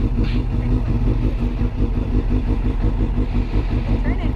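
Suzuki GSX-R750 sportbike's inline-four engine idling steadily.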